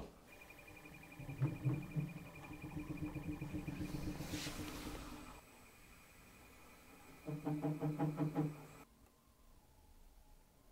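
Brushless robot-arm joint actuator humming faintly, with a thin steady high whine, as the arm is guided by hand. After a short quiet gap comes a louder pulsing buzz for about a second and a half: the joint vibrating under its original controller.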